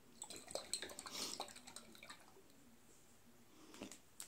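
Faint handling of a glass hot sauce bottle: a cluster of small clicks and wet, liquid-like sounds in the first second or so as the bottle is worked and the sauce shaken out, then near quiet with one small tick near the end.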